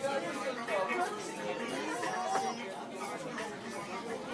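Indistinct chatter: several people talking at once in a room.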